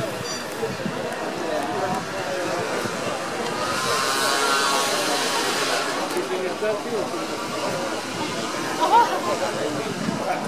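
Indistinct talk and chatter of several voices, with no music playing. About nine seconds in there is a brief, louder sound whose pitch rises.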